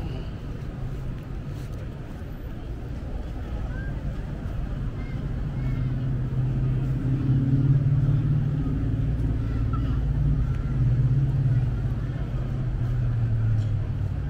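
A motor vehicle engine running nearby, a low hum that grows louder about five seconds in and stays loud until near the end.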